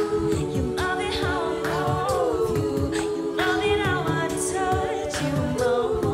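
A cappella group singing: backing voices hold a sustained chord while a higher vocal line moves above it, over a steady beat of vocal percussion (beatboxing).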